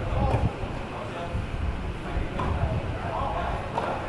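Background chatter of people's voices over a steady low rumble, with a few faint sharp clicks of tennis balls struck by rackets during a doubles rally.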